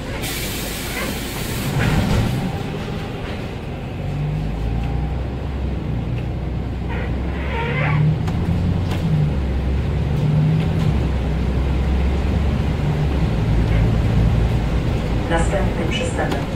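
Interior of a Volvo 7000A articulated city bus: a burst of pneumatic air hiss at the start, then the diesel engine pulling away and running, its low hum building steadily over the following seconds.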